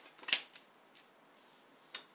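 A tarot card snapping as it is pulled from the deck in the hand: one sharp snap about a third of a second in, with a fainter click at the start and another near the end.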